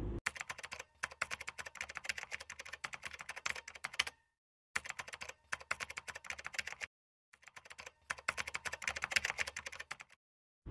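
Computer keyboard typing: rapid key clicks in three runs, with brief pauses about four and seven seconds in.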